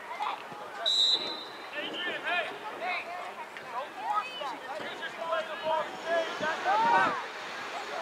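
Voices shouting across a soccer field, from players and spectators, with a short, steady, high referee's whistle blast about a second in.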